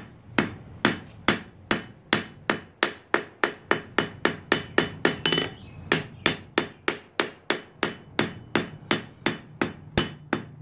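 Hand hammer striking a red-hot steel knife blade on a steel anvil, a steady run of blows about two to three a second.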